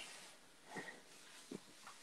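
Near silence: room tone with a faint blip a little under a second in and a brief faint click about a second and a half in.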